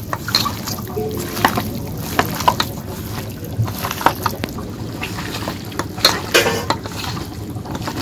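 Hands squishing and kneading raw meat, potatoes and sliced onions with spice paste in a steel bowl: irregular wet squelches and small clicks.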